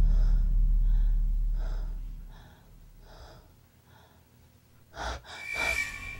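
A woman breathing in quick, shaky gasps, about two or three breaths a second, over a low rumble that fades away in the first couple of seconds. Near the end a sudden swell of noise comes in with a held high tone.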